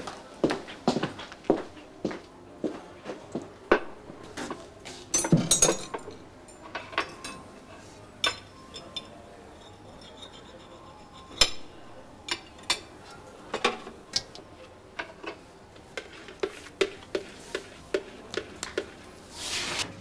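Hard household objects being handled: irregular clinks, taps and knocks, with a quick cluster about five seconds in.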